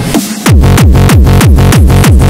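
Hard tekno (hardtek) music: after a brief dip, a loud distorted kick drum with a falling pitch comes in about half a second in and repeats in a fast, even beat.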